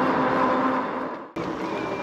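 Wind and tyre noise from an electric fat bike riding along a paved street, with a faint steady hum under it. It cuts off abruptly about a second and a quarter in and picks up again a moment later.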